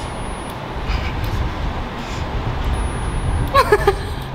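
Steady low rumble of parking-garage background noise, with a brief burst of laughter near the end.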